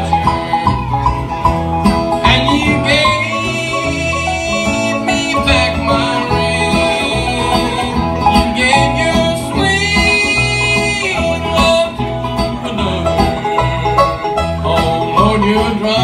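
Small country band playing live: a strummed acoustic guitar with electric guitars over a steady bass line.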